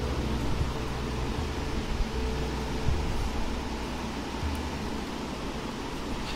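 Steady low hum with a hiss of background noise.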